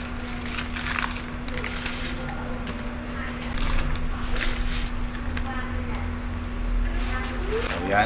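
Pasta boiling in a large aluminium stockpot on a gas burner over a steady low hum, while a spatula stirs it with scattered knocks and scrapes against the pot.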